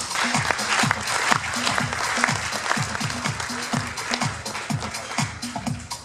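Audience applauding over walk-on music with a steady electronic beat.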